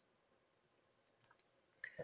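Near silence: room tone with a few faint clicks, the last one just before speech resumes.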